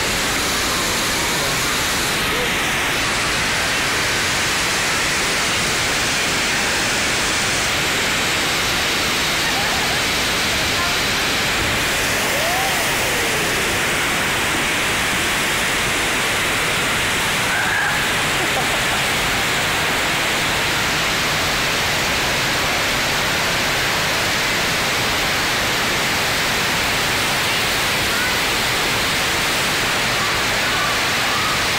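FlowRider surf simulator's pumped sheet of water rushing steadily up the wave as a bodyboarder rides it, a continuous loud rush of water.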